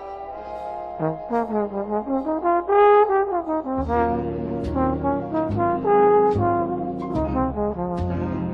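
A jazz orchestra recording: a solo trombone plays a slow ballad melody, with smooth slides between notes, over sustained brass and reed chords. String bass and drums come in about four seconds in.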